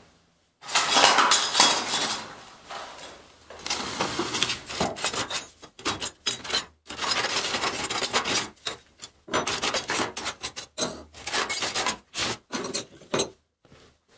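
Scrap steel offcuts, including pieces of saw blade, scraping and clinking against each other and a metal tray as a gloved hand rummages through them, in irregular bursts with short pauses.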